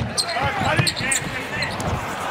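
A basketball bouncing on a hardwood court, with arena crowd noise behind it.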